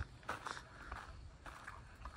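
Faint footsteps of a person walking across a packed dirt yard, a few soft steps.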